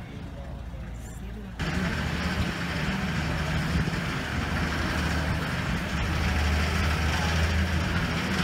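Engine and road noise heard from inside a moving public-transit vehicle: a low steady hum at first, turning suddenly louder about a second and a half in, with a strong rumble that holds steady.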